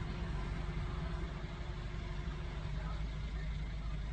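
Car engine idling, a steady low rumble heard from inside the car cabin.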